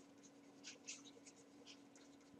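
Faint scratching of handwriting strokes as a word is written, a quick series of short strokes over a faint steady hum.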